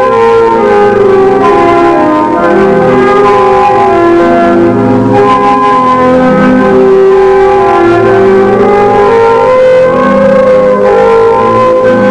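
Instrumental closing music: loud, layered, sustained notes with a chiming, bell-like quality, moving slowly from chord to chord.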